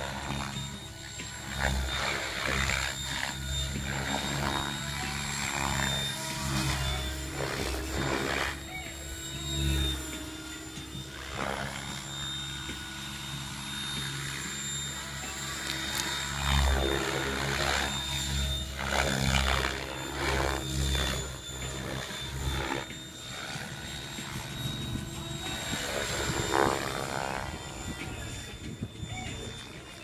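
Electric Mikado Logo 600 SX radio-controlled helicopter flying 3D aerobatics: a steady high motor and rotor whine, with the blade noise swelling and fading every few seconds as it manoeuvres.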